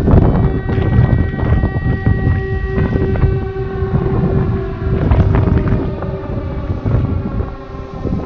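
Civil-defence siren sounding with steady held tones, a few of them sliding in pitch around the middle, over a loud low rumble and wind buffeting the microphone.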